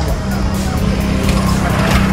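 A motorcycle engine passing close by, growing louder toward the end, over music with a steady beat.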